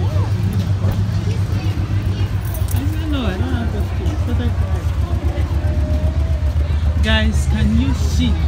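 Steady low rumble of a car moving slowly in traffic, with indistinct voices talking over it.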